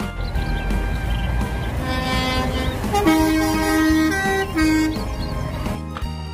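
Heavy lorry horns sounding in several held blasts over the low rumble of truck diesel engines, the longest blast about three seconds in.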